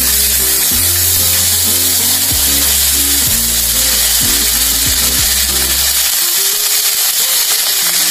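Onion and garlic paste sizzling in hot oil in a steel kadai, a loud steady hiss. Background music with a bass line plays underneath for the first six seconds or so.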